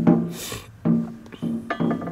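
A man's voice holding three short, steady notes, as if humming to himself, with a brief hiss about half a second in.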